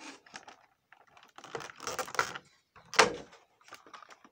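Irregular clicks, rustles and knocks of something being handled, with one sharp knock about three seconds in.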